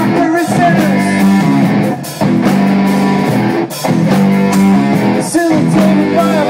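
Live rock band playing loudly: electric guitar chords held over a drum kit, with short stops in the riff about two seconds, three and a half seconds and five seconds in.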